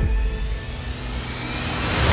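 Cinematic trailer sound design: a low rumble under a rising whoosh that swells in the second half, building toward a hit as the title is revealed.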